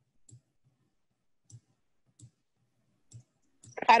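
Computer mouse clicking: four faint single clicks spaced irregularly, roughly a second apart, as on-screen objects are picked up and moved. A person starts speaking near the end.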